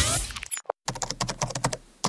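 A short rushing noise in the first half second, then rapid typing on a computer keyboard for about a second and a half.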